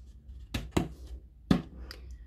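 A few sharp knocks and clicks of painting supplies being handled and set down on a hard work surface, the loudest about one and a half seconds in.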